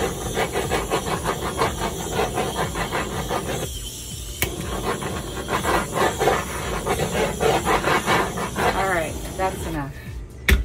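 Handheld butane torch flame hissing steadily as it is passed over wet acrylic pouring paint, popping surface air bubbles. The flame stops briefly about four seconds in, comes back on with a sharp click, and is shut off just before the end.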